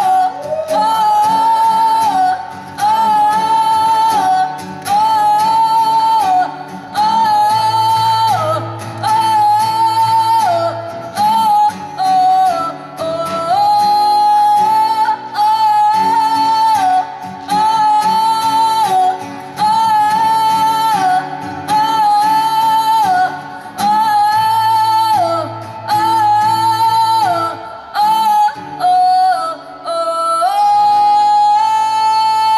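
A woman sings through a microphone in a series of long held notes with short breaks between phrases, accompanied by a strummed acoustic guitar.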